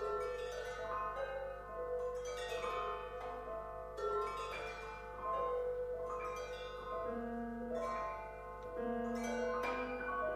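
Piano and percussion duo playing contemporary chamber music: separate ringing notes struck one after another and left to fade, several overlapping, with a fresh attack every second or two.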